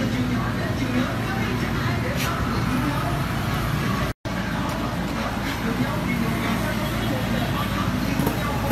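Steady background of indistinct voices over motorbike traffic noise, with a brief cut to silence about four seconds in.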